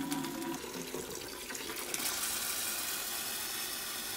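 Water being forced by air pressure out of a flexible-wall permeameter cell through a drain tube, running steadily; about two seconds in it gives way to a steady hiss of air blowing through the line as the cell empties of water.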